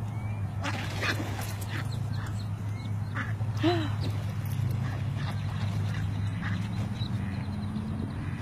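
Muscovy ducks scuffling at the water's edge: a run of sharp scuffling strokes, with a short duck call about three and a half seconds in. A steady low hum lies underneath.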